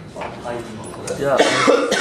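Unclear human speech from people standing by, loudest from about a second in.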